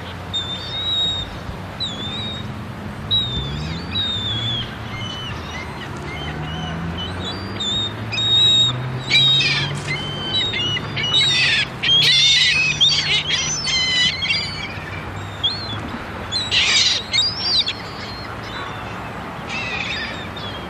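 A flock of Canada geese and gulls calling in short, high-pitched squawks and squeals. The calls come thickest in bursts about halfway through and again near the end.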